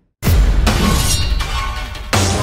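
Dramatic TV soundtrack: a sudden loud crash-like sound effect hits over background music right after a split second of silence, with a second swell about a second later.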